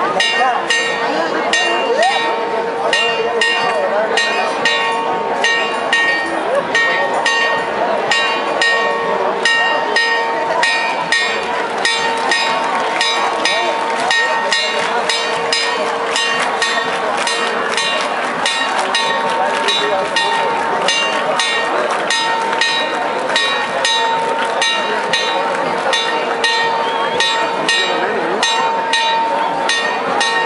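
A large crowd talking over rapid, regular metallic strikes with long steady ringing tones: bells pealing continuously.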